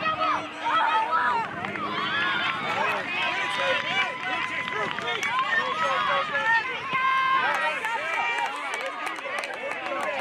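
Many voices shouting and calling at once, overlapping so that no single word stands out: sideline spectators and players during a youth soccer match.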